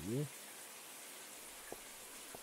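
Shower water running, a steady even hiss of spray, with one faint click near the end.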